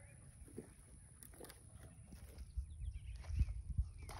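Chainsaw being pull-started: two hard pulls on the starter cord near the end, over a low wind rumble.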